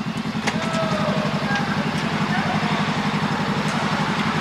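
A motorcycle engine idling with a steady, even pulse.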